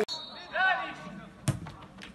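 A short voice, then about a second and a half in a single sharp thud of a football being kicked.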